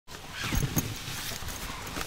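A backpack being handled on a lap: a few soft thumps just after half a second in, then the rustle of its fabric as it is opened.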